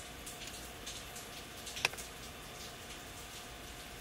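Quiet room tone inside a car cabin: a faint steady hiss with scattered light ticks and one sharp click a little before the middle.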